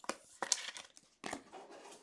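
Trading cards and their foil pack wrapper being handled: a few short, sharp crinkles and rustles, with a fainter rustle between them.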